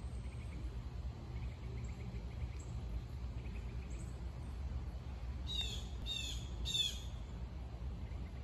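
A bird calling outdoors: faint chirps early, then three short, bright calls about half a second apart past the middle, each a run of quick downward notes. A steady low rumble sits underneath.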